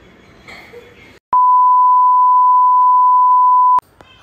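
A single steady, loud electronic beep tone, one pure pitch, added in editing. It starts a little over a second in, lasts about two and a half seconds, and cuts off suddenly.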